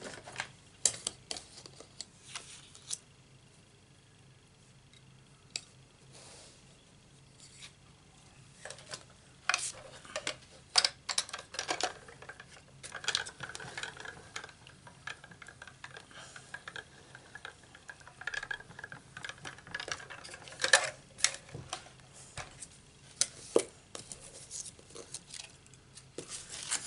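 Acrylic cutting plates and a metal die clicking and clacking as they are handled and stacked, then a hand-cranked manual die-cutting machine being turned, with a faint steady whir for several seconds. Sharp clacks near the end as the cutting plates are pulled apart.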